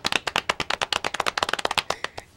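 Two people clapping their hands in a quick, uneven patter that stops just before the two seconds are up.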